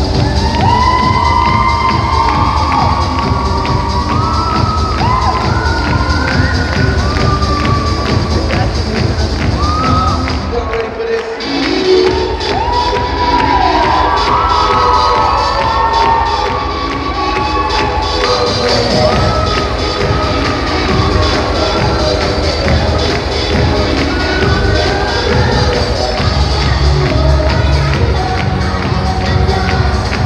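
A 90s dance-music mix playing loudly over a hall PA, with a crowd of children cheering and shouting over it. The bass and beat drop out for about a second, roughly a third of the way in, then come back.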